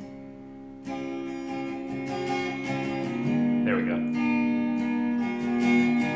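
Epiphone semi-hollow-body electric guitar played as chords and notes that ring on. It starts quietly and gets louder about a second in.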